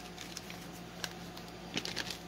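Faint handling noise: a few light clicks and soft rustles as a note card and small plastic zip bags are taken out of a mailer bag.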